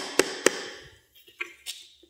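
Hammer driving a nail into a wooden batter board: the last two quick blows, about three a second, then the strikes stop and two faint knocks follow.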